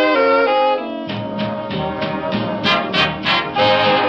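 1930s swing big band playing an instrumental passage: brass and saxophone sections holding and changing chords, with a few short accented chords about three seconds in. The sound is an old recording with a muffled top end.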